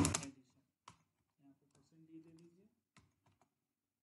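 Faint, sparse keystrokes on a computer keyboard as code is typed: a few separate clicks spread over several seconds.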